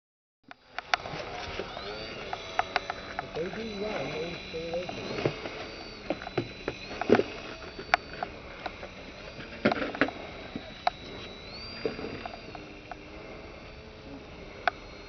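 Radio-controlled model airplane in flight: a faint high whine from its motor that steps up in pitch and back down several times, under indistinct voices and frequent sharp clicks.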